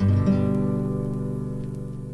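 Closing chord of a progressive rock track: a guitar chord is struck, strummed again about a third of a second later, and left to ring and fade away.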